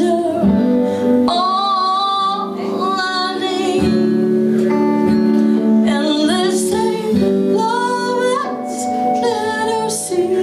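Live band music: a woman singing over acoustic guitar, electric guitar and violin, her sung phrases rising and falling with vibrato above held guitar chords.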